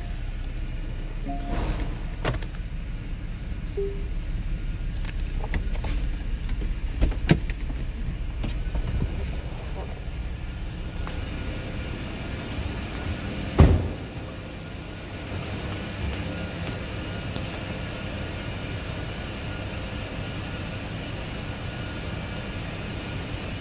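Porsche Cayenne idling, heard from inside the car, with a few short electronic chimes in the first few seconds and scattered clicks. A loud thump comes about 14 seconds in, after which a steady hiss remains.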